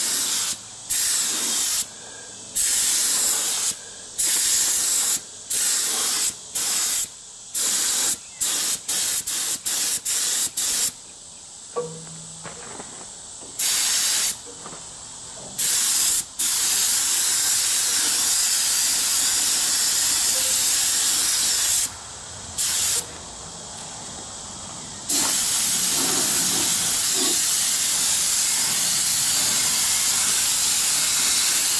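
Gravity-feed compressed-air paint spray gun hissing as the trigger is pulled: a dozen or more short bursts in the first half, then long steady passes with one break.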